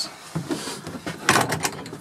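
Handling noise from small hard objects being moved about, with a quick run of clicks and knocks about a second and a half in.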